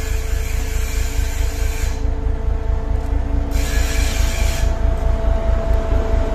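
ChME3 diesel shunting locomotive S-291 hauling a train of open freight wagons toward and past the listener: a low pulsing engine rumble with a steady whine, growing louder as it draws near, with spells of hiss.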